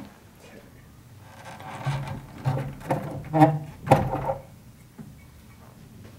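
Handling sounds as the heavy metal platter of a Garrard 301 turntable is taken off its spindle: a few knocks and scrapes, the sharpest about four seconds in, mixed with brief voice sounds.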